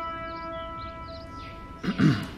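Trailer soundtrack: a sustained, horn-like drone tone fades away, with a few faint high chirps over it, and a whoosh swells up near the end.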